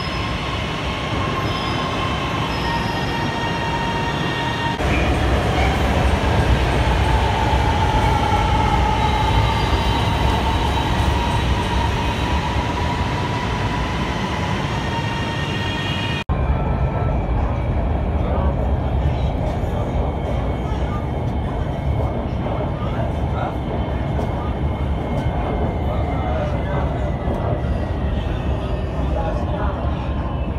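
Lahore Orange Line electric metro train pulling into the station: a steady motor whine, then louder rumbling with a slowly falling whine as it slows to a stop. About halfway through, the sound switches abruptly to the steady rumble of the train running, heard from inside the carriage.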